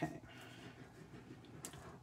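Faint handling sounds of a liquid-glue bottle's tip being drawn across patterned cardstock, a soft scratchy hiss about half a second in, with a light click near the end.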